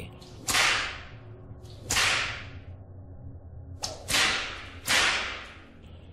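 Whip-lash sound effects: four sharp cracks with a smaller fifth, each with a short hissing tail, spaced unevenly over a faint low drone.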